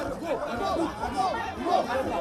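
A crowd of people all talking at once, many voices overlapping.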